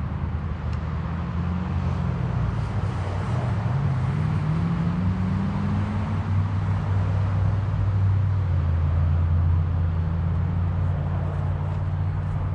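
A low, steady motor hum whose pitch drifts slowly, rising a little in the middle and growing somewhat louder before easing near the end.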